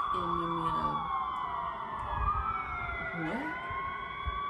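Several sirens wailing together, their pitch slowly rising and falling and crossing over one another.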